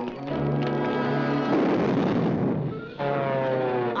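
Orchestral cartoon score playing, broken from about a second and a half to three seconds in by a loud rushing burst of noise, a blast sound effect. Then a run of falling notes.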